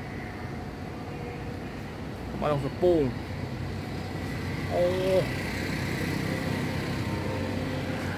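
Steady outdoor background noise, likely distant traffic, that swells for a few seconds in the middle with a faint high whine. A man says a few words about two seconds in, and a short held vocal tone comes just before the middle.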